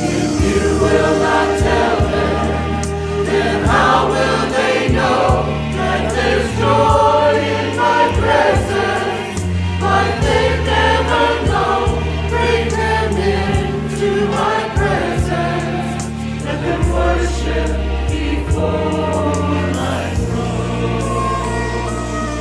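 Mixed choir of men and women singing a gospel hymn together over an instrumental accompaniment with sustained bass notes.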